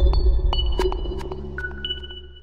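Electronic intro jingle of a news channel: a deep bass note held under high pinging tones and sharp clicks, slowly fading.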